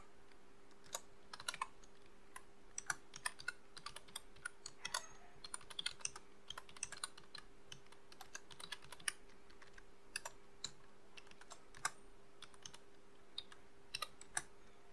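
Computer keyboard typing: faint, irregular key clicks in quick runs with short pauses, busiest in the first half. A faint steady hum runs underneath.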